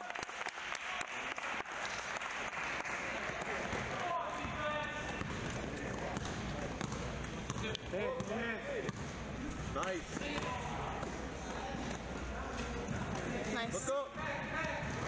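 Basketball being dribbled and bounced on a hardwood gym floor, with players and spectators calling out during play.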